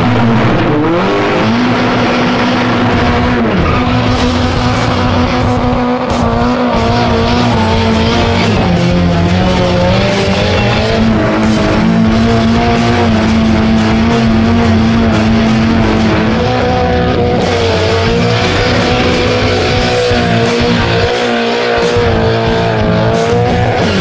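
Nissan 180SX drift car's turbocharged SR20DET four-cylinder held at high revs while the rear tyres spin and squeal through skids; the revs dip briefly a few times and climb straight back.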